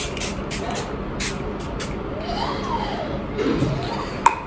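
A pump mist spray bottle spritzed at the face in a quick run of short sprays, about three a second, stopping about two seconds in. A short voice sound follows near the end.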